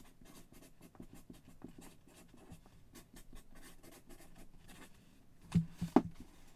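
Felt-tip marker scratching across a small piece of card in short, quick strokes, with a thump and a click near the end.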